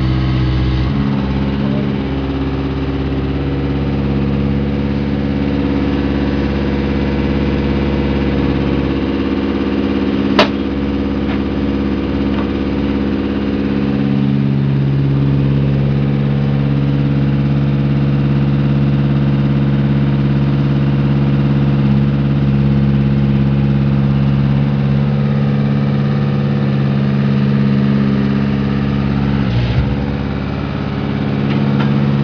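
Compact horizontal directional drill rig's engine running steadily; its note changes about nine seconds in and picks back up about five seconds later. A single sharp click about ten seconds in.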